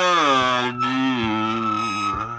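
Harmonica playing a long blues note that bends down in pitch and is then held, with a brief break about three quarters of a second in.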